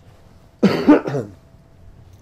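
A person coughing: a sudden loud cough of two or three quick bursts starting just over half a second in and over within a second.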